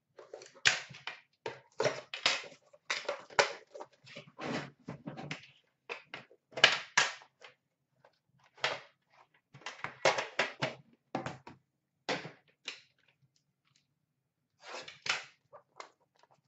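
Metal tin box of Upper Deck The Cup hockey cards being handled and opened: irregular clicks, knocks and scrapes of the tin and its lid, in clusters, with a quieter stretch near the end.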